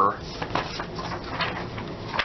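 Sheets of paper being handled and slid across a desk as one page is swapped for another: a few brief rustles and slides, about half a second in and again near a second and a half in.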